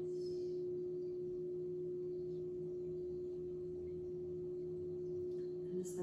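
Hand-held brass singing bowl ringing with one steady, sustained tone, a fainter lower tone beneath it, holding at an even level throughout.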